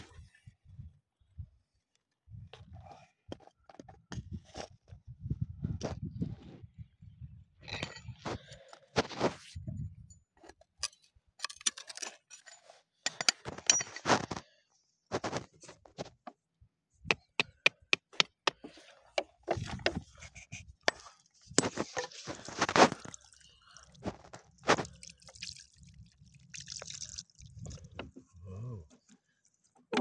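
Stones and gravel knocking and scraping as they are dug through and handled, in irregular clicks and short scrapes, with low rumbling bumps from the phone being moved about.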